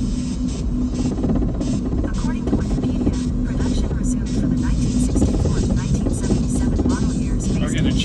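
Steady road and engine noise inside a moving Chrysler PT Cruiser's cabin, with music playing under it.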